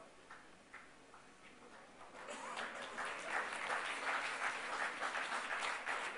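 Audience applauding: a few scattered claps at first, swelling into full, dense applause a little over two seconds in.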